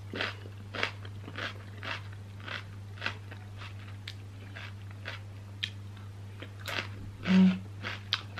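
Close-up chewing of raw bell pepper topped with cream cheese: crisp crunches at about two a second. Near the end there is a short hummed "mm".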